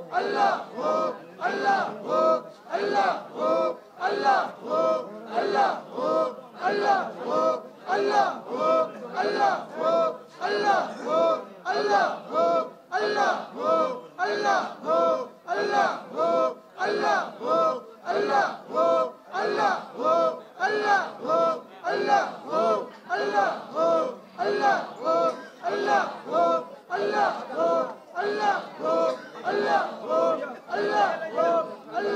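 Many men's voices chanting together in a fast, even rhythm, about two beats a second without a break: a devotional Sufi zikr led over a microphone and loudspeakers.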